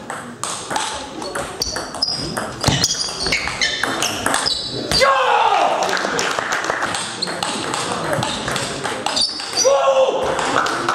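Table tennis rally in a sports hall: the celluloid-type ball clicks rapidly off bats and table, with shoes squeaking on the hall floor. The rally ends about halfway through with a loud shout, and another shout comes near the end.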